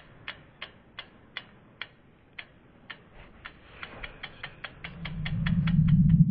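Logo animation sound effect: a run of sharp ticks that speed up from about three a second to about six, over a low hum that swells up in the last second or two.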